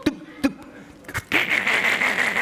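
A man's hissing, sputtering mouth noise, about a second long and starting partway through, imitating a car engine stalling because its exhaust is blocked.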